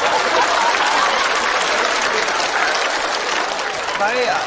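Studio audience applauding steadily, easing off slightly near the end.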